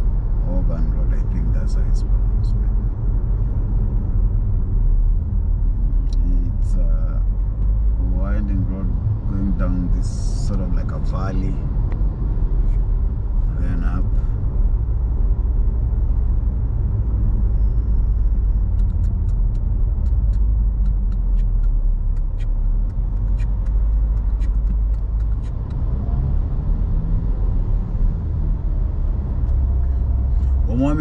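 Steady low rumble of a moving car's road and engine noise heard from inside the car, with a few short stretches of a voice about eight to fourteen seconds in.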